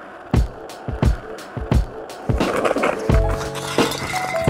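Skateboard wheels rolling on pavement with a run of sharp clacks from the board. Music with a bass line comes in about halfway.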